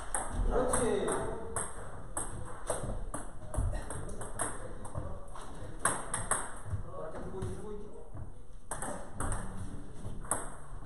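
Table tennis rally: a celluloid ball clicking sharply off rubber paddles and the tabletop, two to three hits a second. The clicks thin out briefly near the eight-second mark, then a new rally starts.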